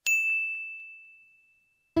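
A single bright ding sound effect, struck once at the start and ringing out on one clear tone that fades away over about a second and a half.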